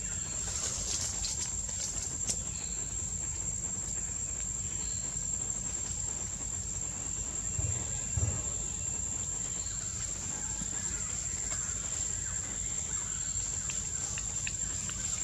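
Outdoor forest ambience: a steady high-pitched insect drone over a constant low rumble, with a few faint clicks in the first two seconds and two soft low thumps about eight seconds in.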